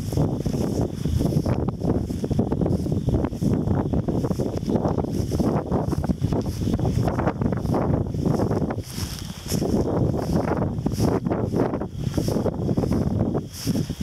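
Wind buffeting the microphone in uneven gusts, mixed with the swish and rustle of tall dry prairie grass brushing past as someone walks through it.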